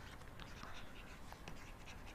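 Pen writing on a writing surface: a quiet run of small scratches and ticks as words are handwritten.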